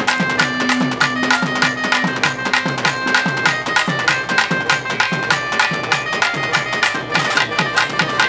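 Instrumental interlude of Tamil folk music: a clarinet plays a held, ornamented melody over steady drum strokes about four a second, each dropping in pitch.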